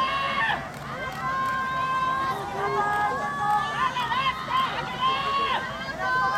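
Several people shouting encouragement at once, overlapping high-pitched calls, many of them held long.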